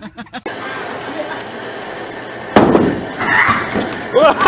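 Bowling-alley background noise, then a sudden loud thud about two and a half seconds in as a bowler falls onto the lane, followed by a short cry.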